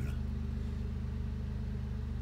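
2017 Mini Cooper's 1.5-litre three-cylinder petrol engine idling steadily in Park, heard from inside the cabin.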